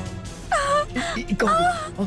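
Dramatic background music with a high, wavering wailing voice that comes in about half a second in.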